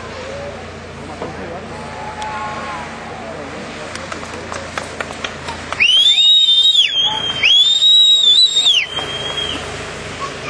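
A person whistling loudly and shrilly: two long steady whistles, each sliding up at the start and dropping off at the end, about six and eight seconds in, with a softer tail after the second. Faint voices and outdoor background sit underneath.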